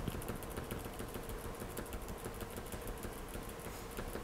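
Quiet room tone: a steady low hum with faint scattered clicks.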